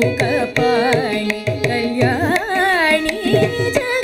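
Female Carnatic vocalist singing with mridangam accompaniment. The voice slides and wavers through ornamented pitch turns, most plainly around the middle, over a run of crisp drum strokes.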